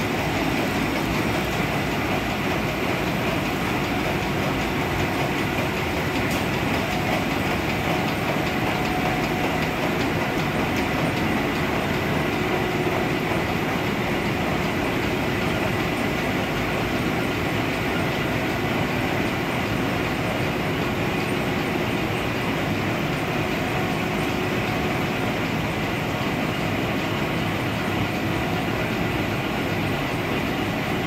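Four-colour rotogravure printing machine running, a steady mechanical clatter with a faint continuous whine.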